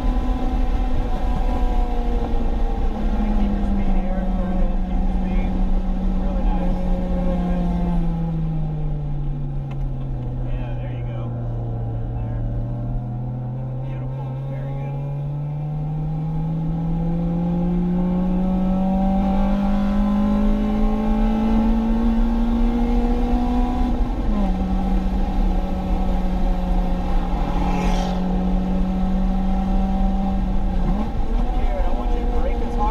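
Acura RSX Type-S's K20 four-cylinder engine heard from inside the cabin at speed on track. The revs fall for several seconds, then climb steadily under acceleration before a sudden drop at an upshift near the end, over steady road and wind noise, with one sharp knock shortly before the end.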